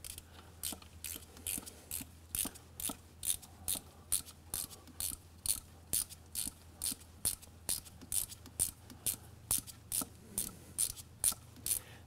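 Ratcheting box-end wrench clicking steadily, about two to three clicks a second, as it backs a glow plug hole reamer out of a diesel cylinder head.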